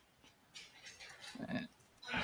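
Faint typing on a computer keyboard, with a brief low grunt-like vocal sound about one and a half seconds in.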